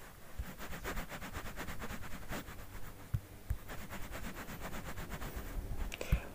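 Stylus scribbling on a touchscreen: a fast run of short scratchy back-and-forth strokes, several a second, as an area of a drawing is shaded in.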